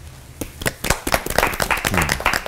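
A small studio audience clapping, starting about half a second in and thickening into steady applause.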